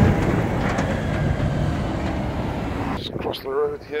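Farm tractor towing a large trailer passing close by on the road, a steady engine and tyre rumble that slowly fades and cuts off about three seconds in. A man's voice follows briefly near the end.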